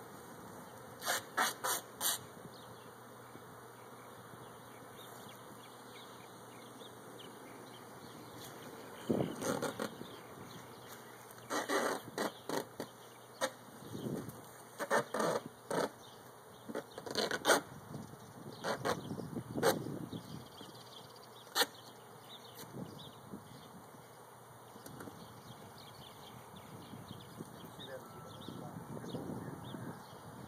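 A honeybee swarm buzzing as a steady background hum, broken by many short sharp knocks and clatters of handling at the wall, bunched together in the middle of the stretch; the knocks are louder than the bees.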